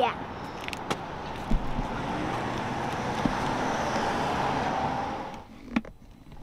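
Steady car noise, an even rush of engine and road sound with a few light clicks, that swells slightly and then cuts off about five seconds in.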